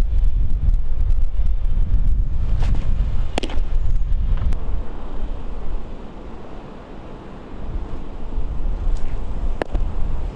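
Wind buffeting the microphone as a low rumble that eases about halfway through, with a sharp pop of a pitched baseball into the catcher's mitt about three seconds in and another near the end.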